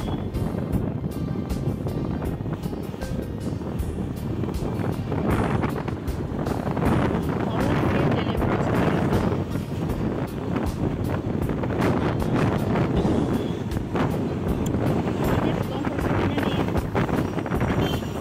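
Wind buffeting the microphone and road and engine noise from a moving motorcycle, with music playing over it.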